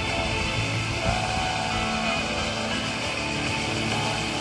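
Music from a distant Italian FM station on 88.0 MHz, played through the small speaker of a Sony XDR-V1BTD portable radio.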